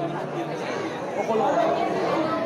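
Speech: people talking over a murmur of background chatter.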